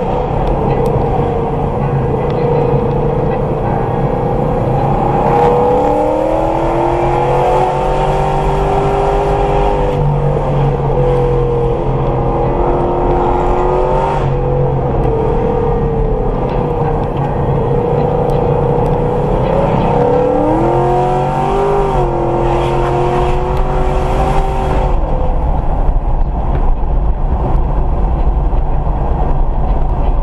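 Car driving, heard from inside: a steady low rumble of road and wind noise, with the engine's note rising and falling through the middle. It grows louder near the end as the car speeds up.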